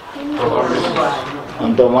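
A man speaking, quieter at first and louder near the end.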